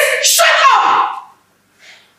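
Speech only: a woman's raised, shouting voice that cuts off abruptly about a second and a quarter in, followed by a brief silence.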